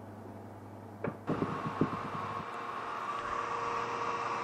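Low, quiet hum; about a second in, a few clicks, then the steady whir of the electric motor spinning the magnet drum, with a faint steady whine, slowly growing louder.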